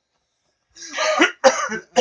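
Stifled laughter breaking into coughs. After a moment of silence, a run of loud cough-like bursts starts about three-quarters of a second in.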